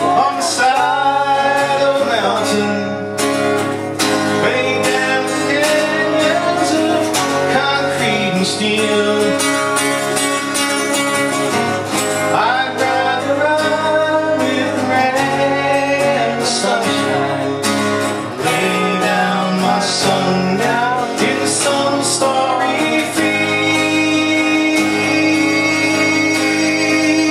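Acoustic guitar strummed and picked through a folk song, with a man's voice singing a gliding, bending melody over the chords.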